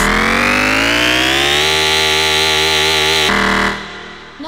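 Sustained electronic synthesizer tone, rich in overtones, sliding upward in pitch for about a second and a half, then holding steady. It cuts off near the end as the EBM track finishes, with the drums already gone.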